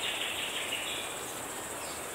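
Outdoor ambience with a steady high buzz of insects over a soft hiss; the buzz fades about a second in.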